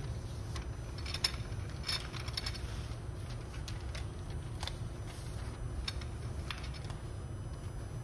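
Paper web rustling, with scattered small clicks and crinkles, as it is pulled and threaded by hand over the metal rollers of a label rewind system, over a steady low hum.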